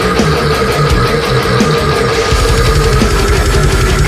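Heavy metal band playing: distorted guitars hold a riff over drums, and a fast, even kick-drum beat comes in a little past halfway.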